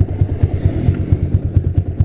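Yamaha Jupiter MX single-cylinder four-stroke engine, bored up to 177 cc with a 62 mm piston, idling with a rapid, even beat while the bike stands.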